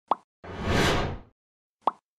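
Animated logo sound effects: a short pop, then a whoosh lasting under a second, then another short pop.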